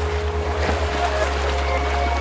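Splashing-water sound effect over music with held notes and a low bass. The splash is strongest in the first second.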